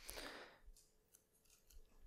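A brief faint rustle of a Bible page being handled in the first half second, then near silence.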